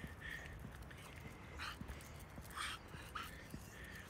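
A dog on a walk panting faintly, a few soft breaths about a second apart, over a low steady rumble. Her heavy panting comes from pulling on her lead.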